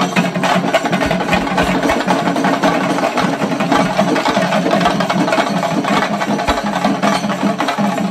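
A group of chenda drums beaten with sticks in fast, dense, continuous strokes, stopping abruptly at the end.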